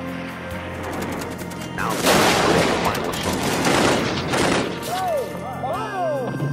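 Sustained small-arms gunfire, many rapid shots running together, starting about two seconds in over a steady music bed. Near the end a few short whistling glides cut through.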